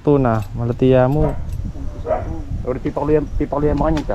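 People talking in the local language, voices going back and forth.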